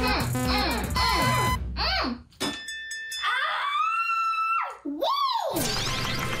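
Upbeat background music with a bass line, then cartoon sliding-whistle effects: a pitch that rises and holds, then a quick rise and fall, before the music starts again.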